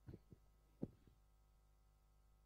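Near silence over a steady low hum, broken by three soft low thumps in the first second, the last the loudest.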